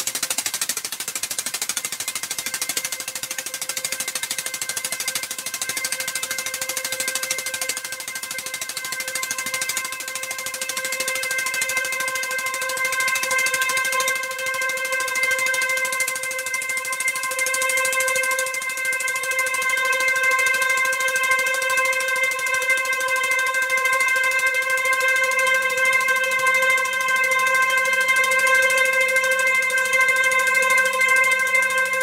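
Electronic ambient music: a hissing noise wash over which a steady drone tone with bright overtones fades in about five seconds in and slowly grows louder. Lower sustained tones enter near the end.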